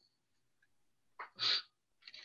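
A person's single short sneeze about a second and a half in, otherwise silence.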